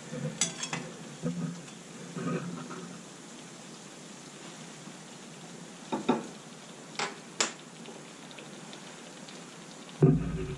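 Donuts deep-frying in hot oil in a cast-iron skillet, with a steady soft sizzle. A few sharp clinks of a metal slotted skimmer against the pan come about half a second in and again three times between six and seven and a half seconds in.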